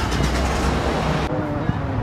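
Busy city street ambience: road traffic running past with people talking nearby. The sound changes abruptly a little over a second in.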